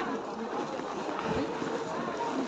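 Outdoor crowd ambience: a steady background of distant voices and movement, with one dull low thump about a second and a half in.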